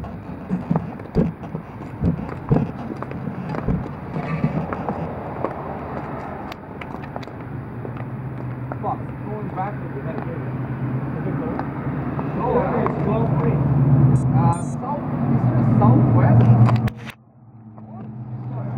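Road traffic: a motor vehicle's low engine hum builds and is loudest toward the end, then cuts off suddenly, with indistinct voices nearby and a few clicks of handling on the camera.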